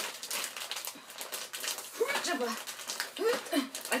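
Plastic tortilla-chip bag crinkling and crackling as it is pulled at and resists opening, with a couple of short strained vocal sounds about two and three seconds in.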